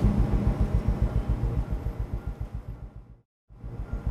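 A low, rapidly pulsing rumble that fades away over about three seconds, breaks off into a moment of silence, then starts again.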